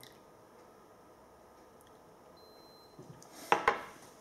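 A small glass beaker set down on a lab bench: two quick knocks of glass on the worktop near the end, after a stretch of quiet room tone.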